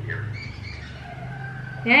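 A faint, thin voice coming over a mobile phone's loudspeaker during a call.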